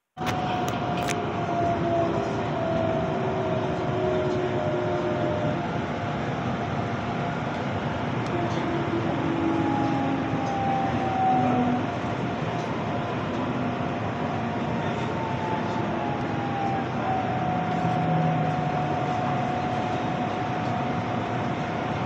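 Inside an electric commuter train running on the Gyeongchun Line: a steady rumble of wheels on rail, with a faint motor whine that glides slowly down in pitch and then holds steady.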